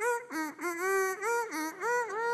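A ventriloquist humming a little tune in his puppet's voice: a run of short notes and a couple of longer held ones at a steady mid pitch.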